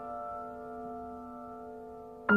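A piano chord of several notes rings on and slowly fades, with no new notes struck.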